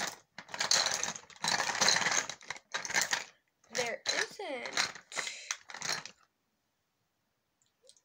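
Makeup items clattering and rattling as they are rummaged through in a small makeup caddy, with some mumbled speech partway through. The sound cuts out to silence about two seconds before the end.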